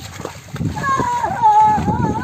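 Buffalo hooves and feet splashing and squelching through a flooded, muddy paddy field as a plough is dragged through it. From about a second in, a high, drawn-out voice calls over the splashing, its pitch wavering up and down.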